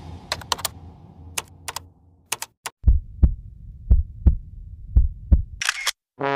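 Logo-intro sound effects: a fading low rumble under scattered sharp clicks, then three pairs of low heartbeat-like thumps about a second apart, ending in a short whoosh.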